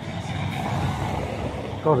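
Road traffic: a motor vehicle driving past on the street, a steady rush of engine and tyre noise that swells in the middle, loud enough to be called noisy.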